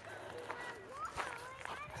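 Footsteps of a person and a dog walking on gravel, light scuffs and crunches a few times a second.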